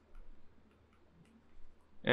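A few faint clicks and ticks of a stylus tapping on a pen tablet while words are handwritten.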